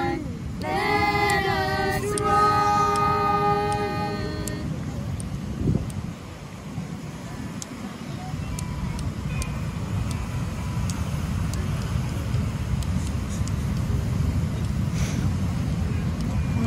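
A woman and children singing a hymn unaccompanied, ending on a held chord about four seconds in. Then a steady low rumble of wind and surf.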